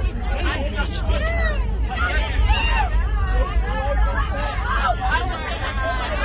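Several people shouting and talking over one another in an airliner cabin, with raised, strained voices throughout, over a steady low rumble.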